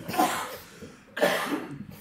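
A person coughing: a short cough at the start and a louder one about a second later.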